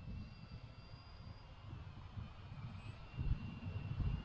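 A faint, steady high whine from the distant P7 Pro Max mini quadcopter's motors, over low wind rumble on the microphone. The rumble rises briefly about three seconds in.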